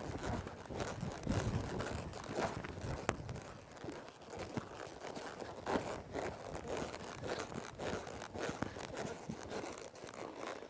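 A horse's hooves landing in soft, deep arena dirt at a lope, as a series of muffled, irregular thuds.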